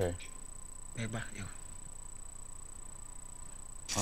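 Two short fragments of a voice, just at the start and about a second in, over a faint steady hiss with a thin, steady high-pitched whine.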